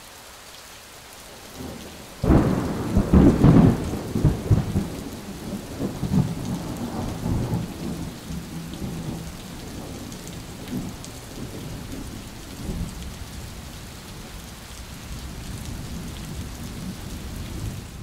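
A thunderstorm: rain falling steadily, with a loud thunderclap about two seconds in that rumbles away over several seconds, then softer rolls of thunder under the rain.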